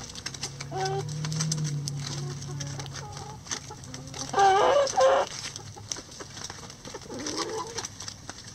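Flock of laying hens clucking as they feed, with a loud run of squawky calls about halfway through and a shorter call near the end.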